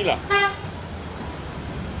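A single short vehicle-horn toot about a third of a second in, over a steady low rumble of traffic.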